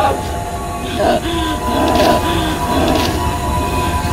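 A woman's short distressed moans and cries, repeated every second or so over a steady low rumble.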